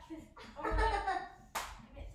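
Indistinct talking, with one short sharp clap about one and a half seconds in.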